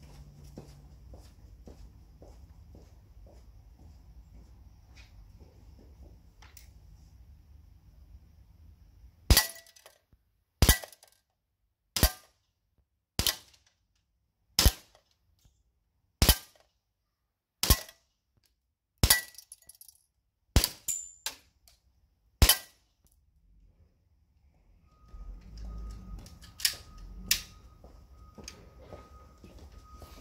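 An EMG STI Combat Master Hi-Capa gas blowback airsoft pistol on green gas fires about ten single shots at a target, roughly one every one and a half seconds. Each is a sharp crack, with the BB hitting the pellet trap.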